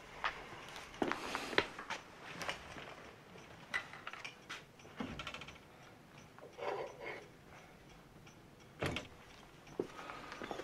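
Scattered small knocks, clicks and rustles of objects being handled and set down on a table, with a short rustle about two-thirds of the way through.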